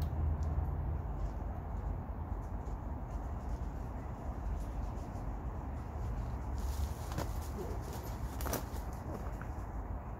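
Steady low rumble of wind on the microphone, with a few sharp crackles of twigs and dry leaf litter underfoot about seven to nine seconds in.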